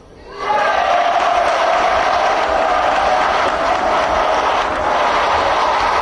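A large crowd of parliamentary deputies cheering and applauding, bursting in suddenly about half a second in and then holding steady and loud.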